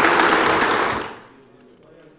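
Audience applause, a steady clatter of many hands that dies away about a second in, leaving a quiet hall.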